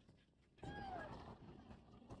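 A single short animal call, falling in pitch, a little over half a second in, over faint low background noise.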